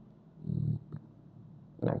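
A brief low hum-like voiced sound, then a single sharp click about a second in, like a key or mouse click; speech begins near the end.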